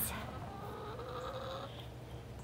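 Domestic hens in a wire-fenced run, one giving a long, low drawn-out call that rises slightly in pitch.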